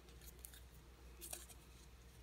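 Faint handling of a small paper name slip: a few soft, crisp paper clicks over near-silent room tone with a low steady hum.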